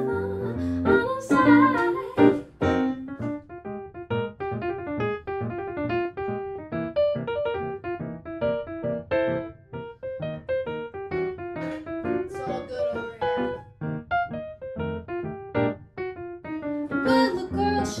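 Piano sound from an M-Audio electric keyboard playing an instrumental solo, a long run of quick, short notes. A woman's singing is heard briefly at the start and comes back near the end.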